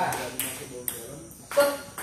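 Table tennis rally: the ball clicks sharply off paddles and table in quick succession, about every half second, the loudest hit near the end.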